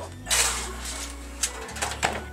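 A short rustle of kitchen paper as hands are wiped, then a couple of light clicks, over a low steady hum.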